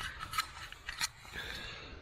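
Nylon tent door zip being tugged from inside: a few short clicks and rasps from the zipper slider and fabric. The zip tends to stick when worked from inside the tent.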